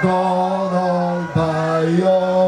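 A man singing solo into a handheld microphone, holding long, drawn-out notes, with a brief break and a new note about one and a half seconds in.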